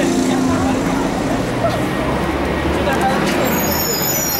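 A motor vehicle engine running, its low rumble growing stronger about halfway through, under indistinct voices.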